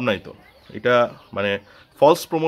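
A man's voice speaking Bengali in short phrases with pauses between them.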